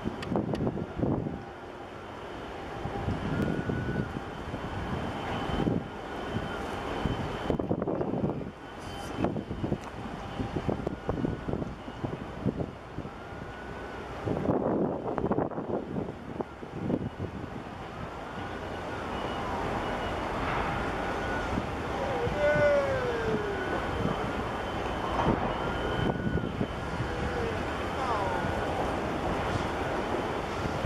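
Wind buffeting the microphone in uneven gusts, with scattered short pitched calls that rise and fall, more of them in the second half.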